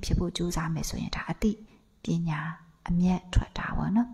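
Speech only: a woman talking into a microphone, with short pauses.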